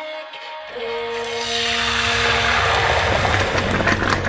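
Tomato passata hitting a hot oiled pan and sizzling. The hiss swells from about a second and a half in, over background music.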